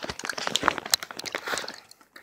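Handling noise: a close, busy run of small crinkles and clicks that dies away near the end.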